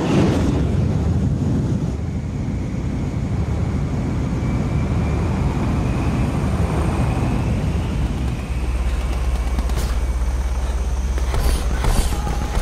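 Jet engines of a giant flying-wing bomber igniting with a sudden roar, then running in a steady rushing roar with a faint high whine over a deep rumble. A few sharp cracks come near the end.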